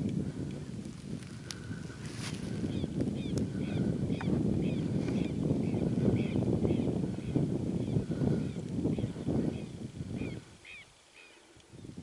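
Wind buffeting the microphone, with a bird's rapid series of short calls, two or three a second, sounding through it. The wind noise drops away about ten seconds in.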